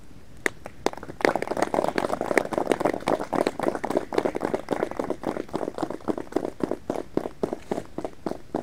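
A group of people applauding: a few single claps, then dense clapping from about a second in that keeps up for several seconds and thins near the end.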